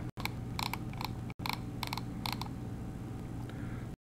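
About a dozen light, sharp clicks in the first two and a half seconds, as from a computer mouse and keys, over a steady low hum of room and microphone noise.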